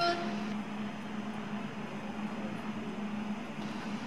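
Indoor ice rink room sound: a steady low hum under a constant hiss, with no music or speech over it.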